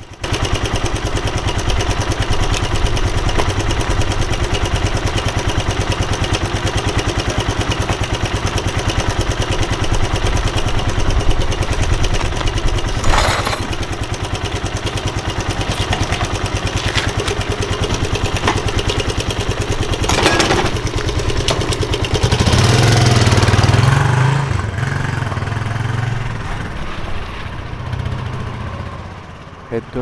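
Suzuki GN125H motorcycle's single-cylinder four-stroke engine running steadily, with an even stream of firing pulses. It grows louder for a couple of seconds about three-quarters of the way through, then settles back.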